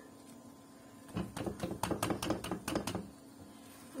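Plastic spatulas tapping and scraping against a nonstick frying pan while an egg omelette is lifted and folded over the bread. The clicks form a quick, uneven run starting about a second in and lasting about two seconds.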